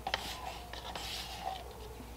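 Wooden stir stick scraping the last of the mixed rigid foam out of a plastic cup: a faint rubbing and scraping with a few light ticks.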